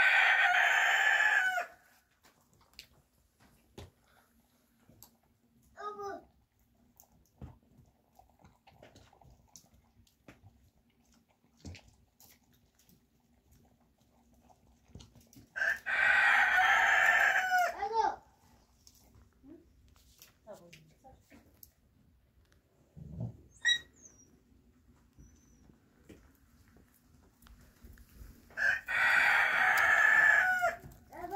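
A rooster crowing three times, about 14 seconds apart, each crow a loud call of about two seconds; fainter short calls come in between.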